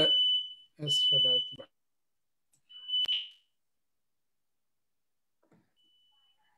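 Heat alarm giving a steady high-pitched electronic tone, first under a few words of speech, then alone for about half a second a few seconds in, where it cuts off with a click. A brief faint tone of the same pitch comes near the end.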